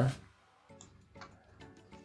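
A few faint computer-mouse clicks, about three of them spaced under half a second apart, with near quiet between.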